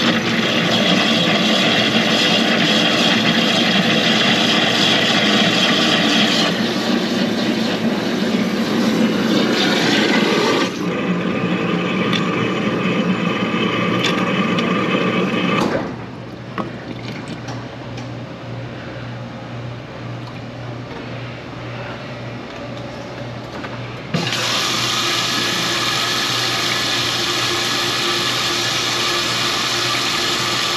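A loud, steady machine noise for the first quarter-minute or so, then a quieter stretch with a low hum. About three-quarters of the way in, water starts running from the faucet into the stainless-steel hand sink, flushing the drain line that was plugged with grease.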